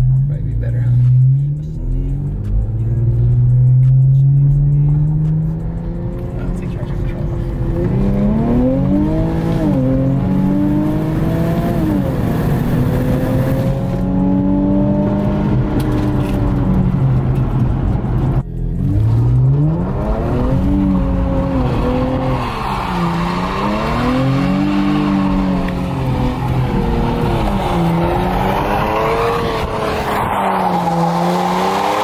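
Turbocharged Infiniti Q50 engine heard from inside the cabin under hard acceleration runs. Its pitch climbs slowly at first, then rises and falls again and again as the throttle is worked. Tyres squeal in the second half.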